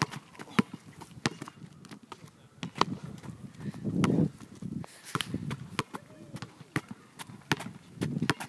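Basketball dribbled on an outdoor asphalt court: a string of sharp bounces at uneven intervals, about ten in all.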